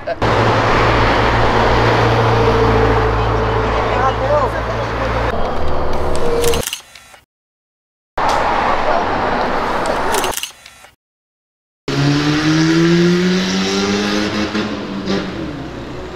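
Car engine accelerating hard: loud engine and road noise with a steady low drone for about five seconds, cut off abruptly twice, then an engine note climbing steadily in pitch as the car pulls away.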